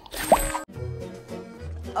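A short cartoon sip sound effect with a quick upward sweep in pitch, about a third of a second in, as an animated character drinks from a teacup. Soft background music with held notes follows.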